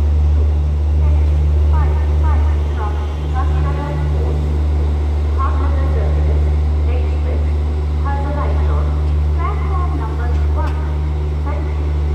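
A train at a railway station running with a steady low drone; a higher hum in it pulses for the first few seconds, then holds steady. Scattered people's voices sound over it.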